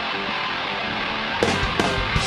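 Live heavy rock band: an electric guitar plays a riff on its own, then the drums come in with hard hits about a second and a half in.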